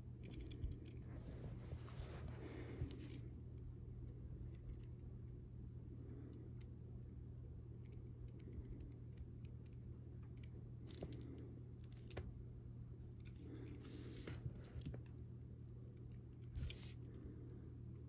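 Faint handling sounds of small craft work: light clicks and soft rubbing as a metal edge paint applicator and a vinyl tab are worked in the hands, over a steady low hum. There is a longer rubbing spell near the start and another about two-thirds of the way through.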